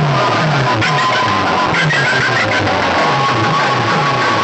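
Loud music blasting from a vehicle-mounted stack of horn loudspeakers in a road-show sound system, with a repeating bass line.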